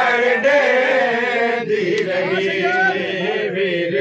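Men's voices chanting a noha, a Shia mourning lament, in Punjabi, in long held lines.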